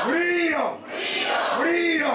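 A person's voice crying out in long cries that rise and fall in pitch, one about every second and a half, with short sharp breath-like noises in the gaps between them.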